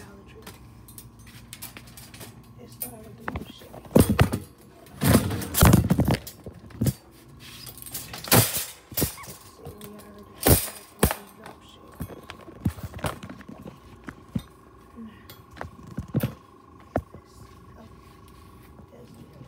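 Wire shopping carts clattering and knocking as a cart is pulled out of a nested row and handled, a string of sharp metal bangs, loudest in the first half. A faint steady high tone runs under the second half.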